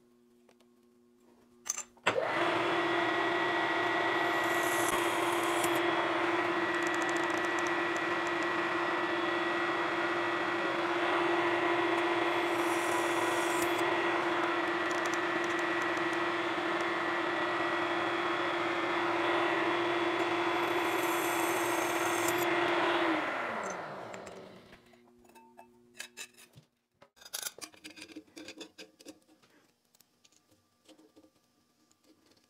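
A vertical milling machine's spindle motor starts and runs steadily with a strong whine, with three brief high, scratchy bursts that fit a drill bit cutting through a thin metal disc. Near the end it is switched off and coasts down, its pitch falling, and a few small clicks follow.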